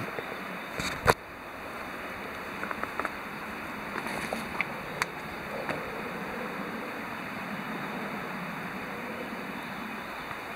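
Rustling and footsteps of someone pushing through leafy forest undergrowth, over a steady rushing background. Scattered small clicks run through the first six seconds; a sharp click about a second in is the loudest sound.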